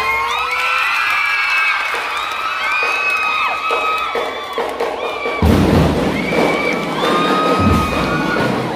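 A large crowd of young spectators cheering and screaming, many high voices rising and wavering at once. About five and a half seconds in, the drum and lyre corps' drums come in with heavy hits under the cheering.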